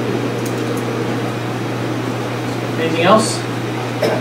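A steady low hum fills the room under faint murmuring voices, and a brief louder voice sounds about three seconds in.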